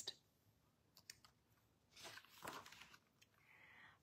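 Near silence with a few faint clicks and a soft paper rustle just after the midpoint, a picture book's page being turned.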